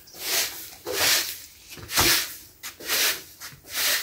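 Plastic-bristled broom sweeping grass clippings off wooden planks, five brisk strokes about one a second.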